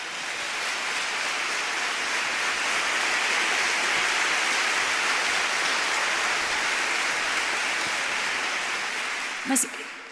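Large concert-hall audience applauding. The clapping builds over the first few seconds, holds, and dies away near the end as a woman starts speaking again.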